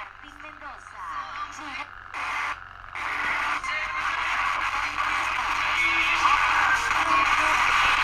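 Pocket AM/FM transistor radio, powered by a small Stirling-engine generator, playing a broadcast of music and voices through its little speaker. The station is not tuned in cleanly: the sound is weak and wavering for the first few seconds, then comes in steadier and louder.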